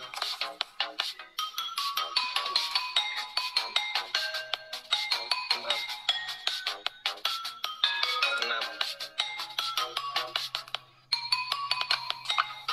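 A mobile phone ringtone playing: a fast, bright electronic melody of short notes that keeps repeating, breaking off briefly near the end.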